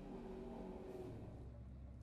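Low, steady running rumble of a train heard from inside the passenger carriage.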